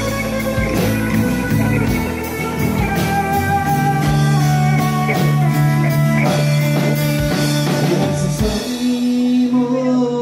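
Live country band playing an instrumental passage with no singing: Telecaster-style electric guitar over strummed acoustic guitar, electric bass and drums, with steady drum strikes that thin out near the end.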